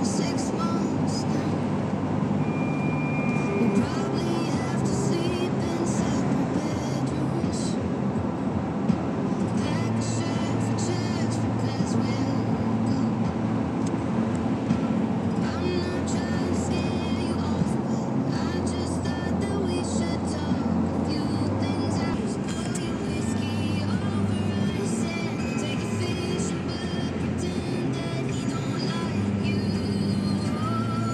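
Car radio playing a song, with singing, heard inside the cabin of a moving car over steady road and engine noise.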